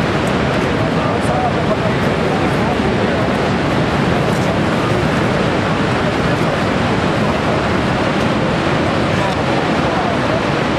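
Niagara Falls' water pouring into the gorge: a steady, unbroken rush of noise.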